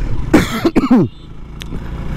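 A short cough-like sound from the rider about half a second in, over the low steady rumble of the moving motorcycle.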